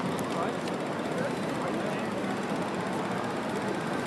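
Busy street ambience: many people talking at once, with traffic running underneath, steady throughout.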